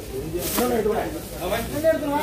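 Voices of people talking, with a brief hiss about a quarter of the way in.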